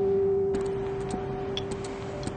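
A steady, held low tone like a sustained note of background music. From about half a second in, street traffic noise and a string of sharp clicks join it.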